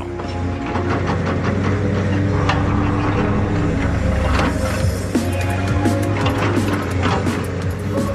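Background music with sustained tones over a steady low hum.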